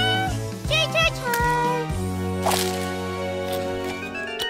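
A knock on a door right at the start, then a cartoon baby's short high babbling calls about a second in, over steady background music whose notes are held through the second half.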